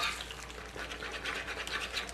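A metal spatula scraping and chopping at eggs frying on a flat tawa griddle, in quick repeated strokes over a faint sizzle.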